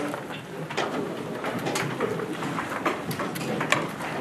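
A roomful of people sitting back down: scattered clicks, knocks and scrapes of chairs and shuffling bodies, with a faint low murmur of voices.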